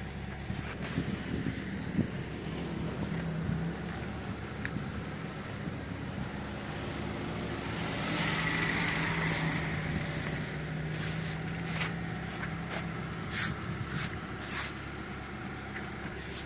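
A hand brush sweeping snow off a car's body and windows, with a run of quick, sharp swishes in the last few seconds, over a steady low engine hum.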